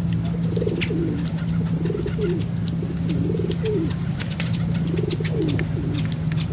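A large flock of feral pigeons cooing, with many overlapping coos that rise and fall in pitch one after another. Underneath is a steady low hum, with scattered sharp ticks over the top.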